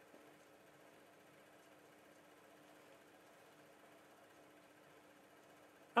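Hornby Class 60 OO gauge model locomotive running on a rolling road: its central can motor gives a faint, steady hum.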